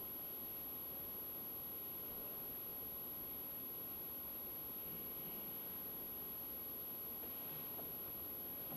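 Quiet, steady room tone of a large church heard through the livestream microphone, mostly a low even hiss with no distinct events.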